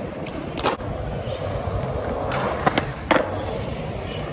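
Skateboard and kick-scooter wheels rolling on a concrete skatepark, a steady rumble broken by a few sharp clacks of decks and wheels hitting the surface, two of them close together about three seconds in.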